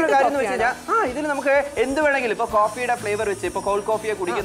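A voice talking without pause in a wavering, sing-song pitch over the steady whir of a small battery-powered portable blender mixing a milkshake.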